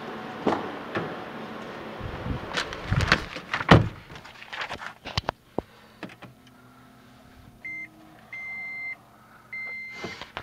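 Knocks, thumps and rustling as someone climbs into the driver's seat of a 2012 Toyota Prius. In the last two seconds come three high electronic beeps at one pitch from the car's dashboard as it is push-started, the second and third longer than the first.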